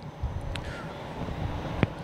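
Wind buffeting the camera microphone, a steady low rumble, with two faint clicks, about half a second in and near the end.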